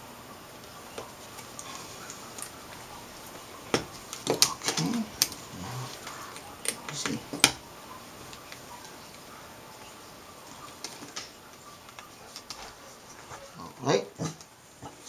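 Scattered light clicks and taps of small metal and plastic parts being handled on an LCD panel's frame, several sharp ones close together from about four to seven and a half seconds in.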